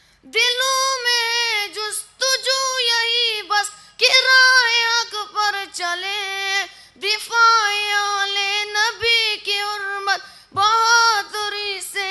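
A boy singing an unaccompanied Urdu tarana into a microphone, a single high voice in phrases of a second or two with short breaths between, beginning just after a brief silence.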